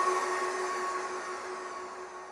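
The closing note of an electronic dance track dying away: a held tone over a hissy wash that fades steadily.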